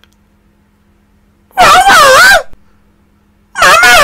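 Two short, loud, high wavering cries about two seconds apart, their pitch rising and falling within each.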